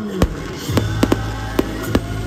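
Aerial fireworks going off: about six sharp bangs and pops at uneven intervals, over music.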